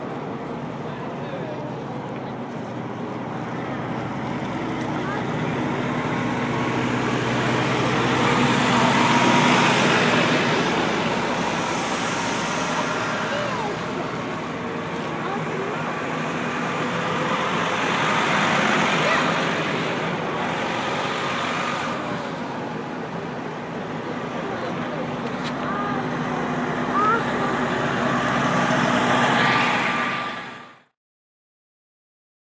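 Large Prevost motor coaches driving slowly past one after another, their diesel engines humming steadily with tyre and road noise that swells as each coach passes close by.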